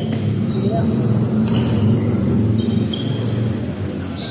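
A basketball being dribbled on a wooden indoor court, with short high-pitched squeaks several times and players' voices in the background.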